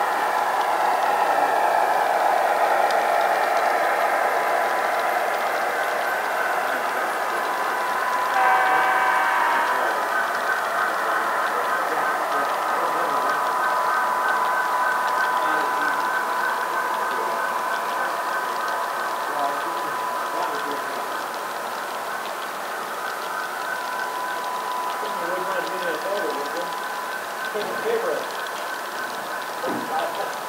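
Model train of Union Pacific diesel locomotives pulling autorack cars rolling past on the layout track, with a steady high whine. It is loudest over the first few seconds as the locomotives go by and settles to a steady run as the autoracks follow, with a brief pitched sound about eight seconds in.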